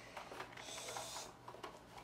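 Toy box packaging being handled: a few light clicks and one brief scraping hiss, about half a second long, near the middle.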